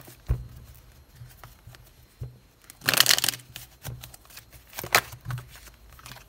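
A deck of oracle cards shuffled and handled by hand: a soft knock near the start, a burst of shuffling about three seconds in, and a short tap near five seconds.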